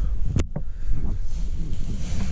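Low rumbling handling or wind noise on the microphone, with one sharp click about half a second in.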